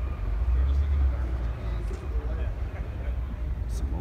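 Outdoor background: a steady low rumble, a little stronger about half a second to a second in, with faint voices of people talking in the background.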